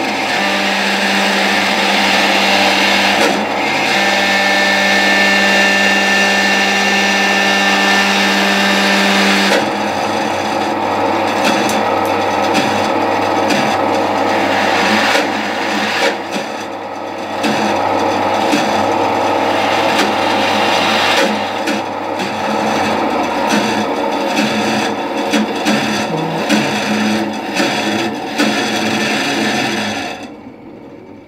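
Bandsaw running and cutting out a small buffalo-horn blank: a steady motor hum under the rasp of the blade. About ten seconds in, the steady hum tones give way to a rougher, grittier rasp, and there is a brief dip in level a few seconds later.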